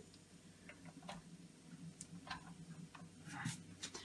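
Mostly quiet, with a low steady hum and a few faint, scattered ticks and clicks.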